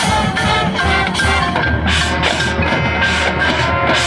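High school marching band playing its halftime show: held low notes under full-band chords, with drum and percussion strikes.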